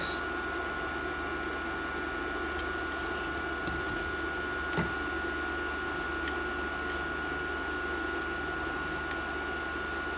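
Steady fan-like whir and hiss with a faint constant whine, and one soft tick about five seconds in.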